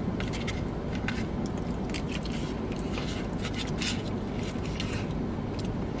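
Plastic spoon scraping and clicking against a foam cup while scooping peach cobbler, a series of short irregular clicks, over a steady low hum in a car cabin.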